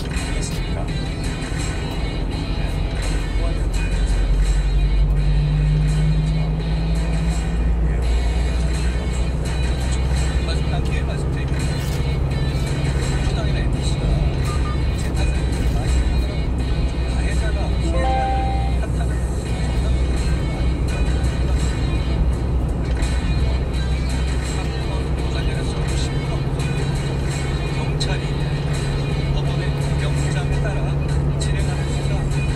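Steady low road and engine drone inside a small truck's cab at expressway speed, with a car radio playing music and voices underneath.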